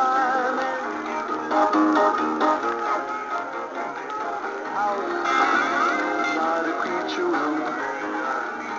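Animated dancing Santa Claus figures playing a recorded song through their small built-in speakers, thin with little bass.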